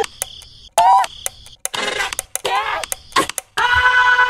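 A cartoon voice giving short high-pitched sung cries, ending on one long held note about three and a half seconds in, with sharp clicks between them.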